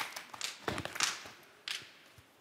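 Handling noise on a headset microphone as it is lifted off the head: a few scattered taps and rubs. The last of the applause dies away in the first moment.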